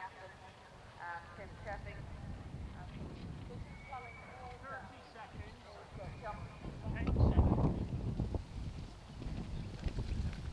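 Horses moving on turf under the faint chatter of people nearby. About seven seconds in, a loud low rumble rises and lasts a second or two.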